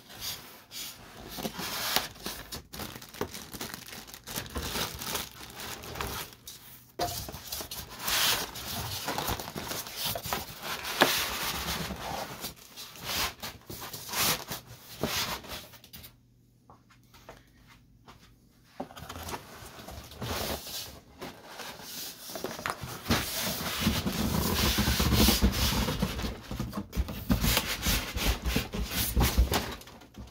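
Foam packing blocks and a cardboard carton rubbing, squeaking and scraping as a printer packed in foam end-caps is slid out of its box, with a brief quiet pause past the middle and heavier, lower scraping and bumping near the end as it is set upright on the bench.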